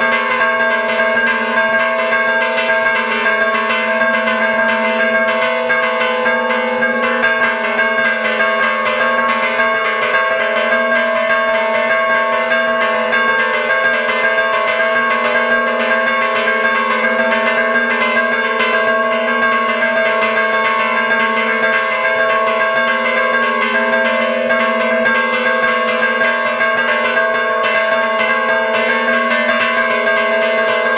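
Church bells of a Galician bell tower rung by hand in a traditional repique. The clappers are worked with ropes to strike the bells in a rapid, unbroken pattern, and several bell tones sound together steadily.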